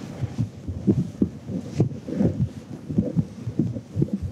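Whiteboard duster rubbing across a whiteboard in a quick run of dull back-and-forth strokes, about three a second.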